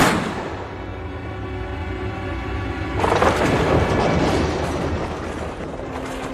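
A single rifle shot right at the start, its report fading out slowly, then about three seconds in a long crash of splintering timber as a wooden barn roof and its beams cave in, all over dramatic background music.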